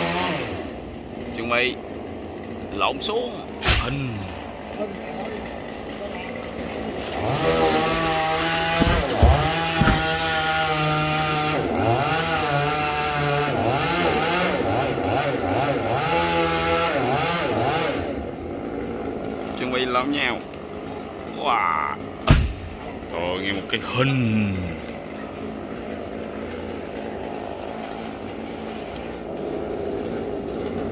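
Chainsaw cutting through the trunk of a yang (dipterocarp) tree. Its pitch wavers and dips under load through a long, loud cut in the middle, with quieter, lower running before and after.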